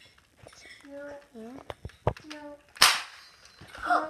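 A Nerf blaster fired once: a single sharp pop about three-quarters of the way through, with a few small clicks and quiet child voices before it.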